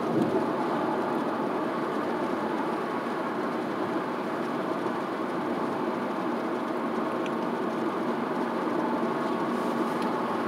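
Steady road and engine noise of a car driving at a constant speed, heard from inside the cabin.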